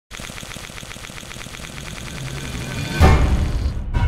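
Electronic intro sting: a fast, even ticking pulse that builds in loudness, then a heavy bass-laden hit about three seconds in that dies away.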